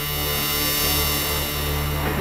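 Ambient electronic synthesizer music: a steady low drone with a dense wash of sustained higher tones over it.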